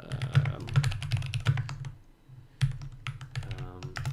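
Typing on a computer keyboard: a quick run of key clicks, a short pause about two seconds in, then more keystrokes.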